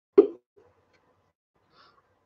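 A single short vocal sound from a woman, one quick syllable about a quarter second in, followed by quiet.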